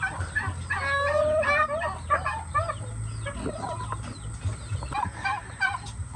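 Poultry, chickens and turkeys, clucking and calling: a steady run of short, overlapping calls throughout.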